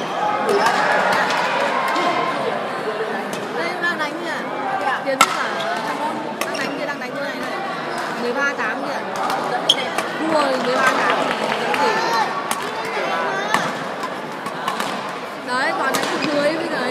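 Many voices chattering in an echoing sports hall, with occasional sharp clicks of badminton rackets striking a shuttlecock during a rally.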